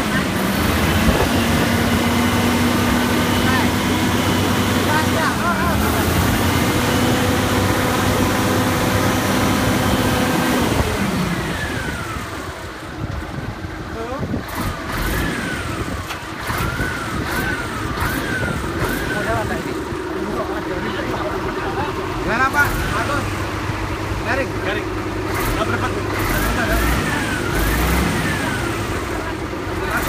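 Scania truck's diesel engine held at steady raised revs, then let go about eleven seconds in, its revs falling back and the sound dropping to a lower idle.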